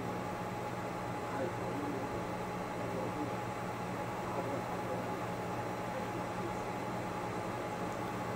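Steady background hiss with a constant low hum, like a fan or air conditioning running.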